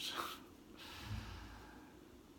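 A man's audible breath out, a single nasal exhale lasting about a second, starting a little under a second in.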